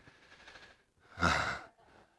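A man's single short, audible exhale or sigh into a close microphone, about a second in.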